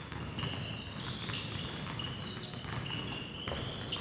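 Several basketballs being dribbled hard and fast on a hardwood gym floor, a quick, uneven patter of bounces, with short high squeaks of sneakers on the wood scattered through it.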